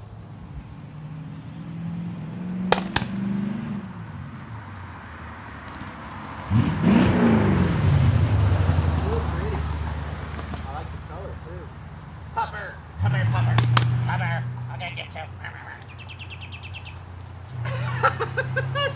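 Cars passing on a nearby road: one swells up about six seconds in with its engine note dropping in pitch as it goes by, and another passes loudly about thirteen seconds in.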